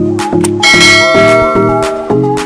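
A bell chime sound effect rings for about a second, starting just over half a second in, as the notification bell is rung. It plays over upbeat electronic background music with a steady beat.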